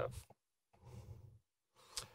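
A man's breath into a close microphone during a pause in his talk, a soft exhale about a second in, followed by a short click near the end.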